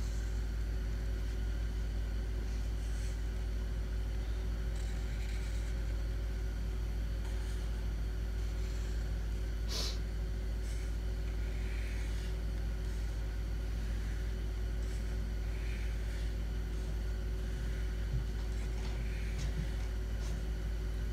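Steady low hum with a faint steady tone above it, and faint soft scratches of a felt-tip marker drawing lines on paper every second or two; a single sharp click about ten seconds in.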